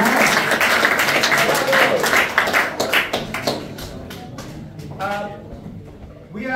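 Audience applauding in a hall, thinning out and dying away over the first four seconds or so. A few voices call out in it, and near the end a man starts to speak.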